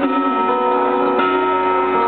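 Live rock band playing an instrumental passage between sung lines: electric guitar and band holding sustained chords, with a new chord struck about a second in.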